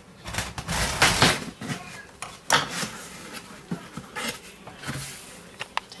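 A cardboard shipping box being opened by hand: a loud scraping, tearing rush about a second in, then knocks and rustles of cardboard, with a couple of sharp clicks near the end.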